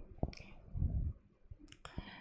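Computer mouse clicking: a single click about a quarter second in, then two quick clicks close together near the end.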